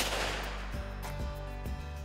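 A single rifle shot from a scoped hunting rifle at the very start, a sharp crack with a short echoing tail, over background music.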